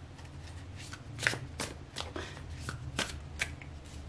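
A tarot deck being shuffled by hand: a string of short, sharp card slaps, two or three a second, the loudest about a second in, over a steady low hum.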